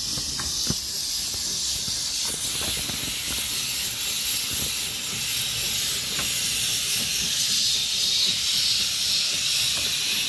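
Hunslet quarry saddle-tank steam locomotive drifting slowly in with its cylinder drain cocks open, a steady steam hiss that grows louder as it comes closer. A few light clicks and knocks from the wheels on the track.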